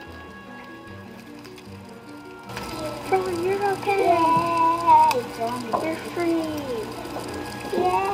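Soft background music of steady held notes. About two and a half seconds in, children's high voices join over it with long, sliding, drawn-out pitches, and these grow louder.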